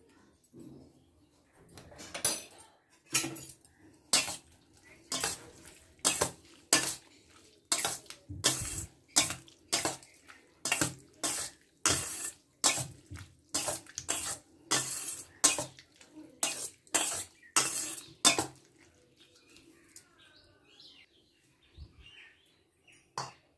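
A metal spoon knocking and scraping against a stainless steel bowl while stirring grated bottle gourd with spice paste, in a steady rhythm of about one and a half strokes a second. The stirring starts about two seconds in and stops a few seconds before the end.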